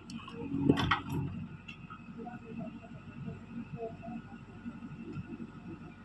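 JCB digger's diesel engine running steadily while it works, with a loud clatter of rock being struck about a second in.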